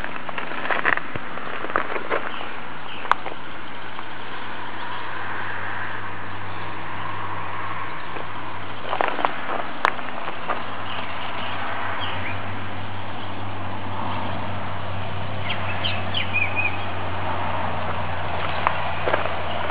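Steady background noise with a low hum, broken by a few sharp clicks and, near the end, a few short high chirps.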